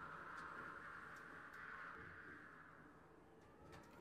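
Near silence: faint room tone with a faint steady hum that fades away over the first three seconds.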